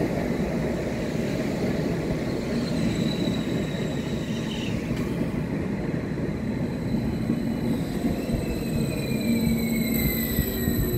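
A nordbahn electric multiple unit running past along the platform: a steady rumble of wheels on rail, with a whine that falls slowly in pitch over the second half.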